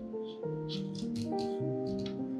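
A knife slicing lengthwise through a raw carrot on a wooden cutting board: a run of short, crisp crunching crackles through the middle, over steady background music.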